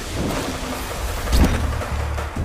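Dramatic soundtrack sound effect: a rushing noise over a low rumble, with a heavy boom about one and a half seconds in.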